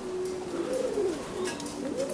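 Domestic pigeons cooing: a run of low coos, each rising and falling in pitch.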